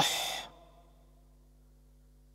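The tail of a recited Arabic word, nashraḥ, ending in a drawn-out breathy, voiceless ḥ (the throat letter ḥā') that fades out about half a second in.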